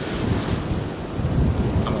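Wind buffeting the microphone in an uneven low rumble, over a steady wash of surf.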